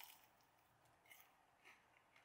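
Near silence, with a few faint soft sounds of a bite and chewing on a piece of deep-fried fish cake: one right at the start, then two more about a second and a second and a half later.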